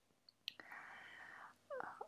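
A woman's faint breath, about a second long, taken between sentences, with a small mouth click just before it.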